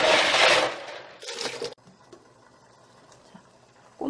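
Cockles being rubbed and rinsed by hand in a stainless-steel colander of water, the shells clattering against each other and the metal with sloshing water. It is loud at first, fades, comes back briefly, and cuts off suddenly under two seconds in.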